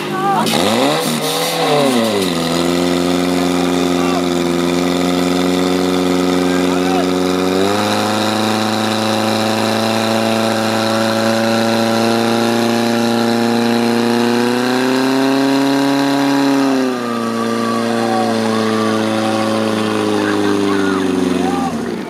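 Portable fire-pump engine revved up hard about a second in, then running at high revs under load as it drives water through the attack hoses. Its pitch steps up near eight seconds, rises and falls back around fifteen to seventeen seconds, and the engine drops off just before the end when the run is over.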